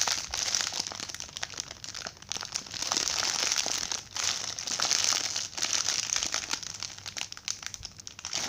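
Clear plastic packaging bag crinkling in repeated swells as a foam squishy toy is squeezed inside it.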